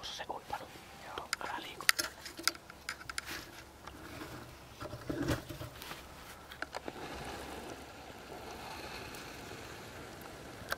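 Close handling noise: rustling of a jacket and the camera being moved by hand, with a run of sharp clicks and scrapes in the first half, then softer, steadier rustling.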